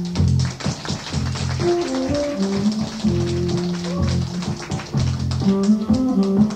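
Live band music: a bass line and a melody line moving in steady notes over busy drums and rapid percussion ticks.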